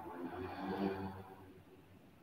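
A faint, muffled voice for about a second, then fading to quiet room tone.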